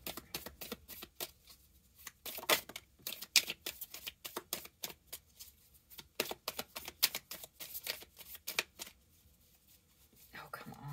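A deck of divination cards being shuffled by hand: a rapid, irregular run of card clicks and flicks, pausing briefly about two seconds in and again near the end.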